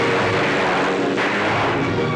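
Motorcycle engine running hard and steady as the bike speeds across open ground.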